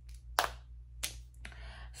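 Two short, sharp clicks about two-thirds of a second apart, the first the louder, over a faint steady low hum.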